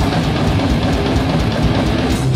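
A thrash metal band playing live: distorted electric guitar riffing over fast drums.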